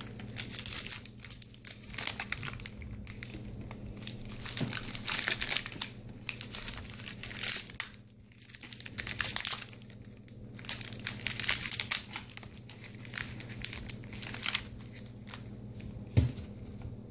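Foil clay bag crinkling in the hands in irregular bursts as it is twisted shut around the clay.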